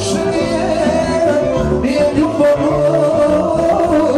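Loud amplified live band music with a singer, a steady dance beat under a winding melody.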